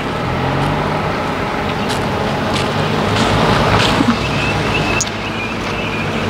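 Road traffic passing close by: the steady engine and tyre noise of vehicles on the road, with a thin high whine over it in the last couple of seconds.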